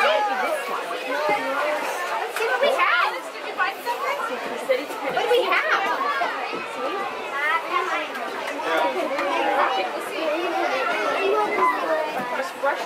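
A group of young children and adults chattering at once, many overlapping voices with no single speaker clear.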